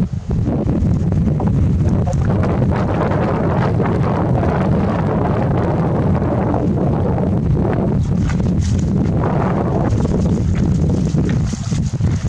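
Wind buffeting the microphone: a loud, steady, low rumble that comes in suddenly and holds.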